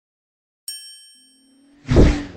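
Intro sound effects: a bright metallic ding about two-thirds of a second in that rings and fades, a low hum joining under it, then a sudden swelling whoosh with a deep hit near the end, the loudest sound.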